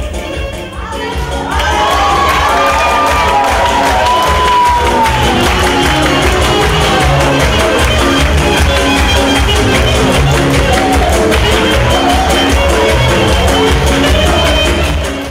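Lively Roma dance music with a steady driving beat and a gliding melody, with a crowd cheering over it. The music swells up to full loudness about a second and a half in.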